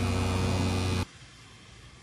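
Electric air compressor humming steadily while air hisses through the hose into a soft three-wheeler tyre that the owner thinks has a slow leak. The sound cuts off abruptly about a second in, leaving faint street background.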